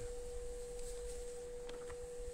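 A steady single-pitch hum, moderately high, holding one note without change, with a low rumble underneath for the first second or so.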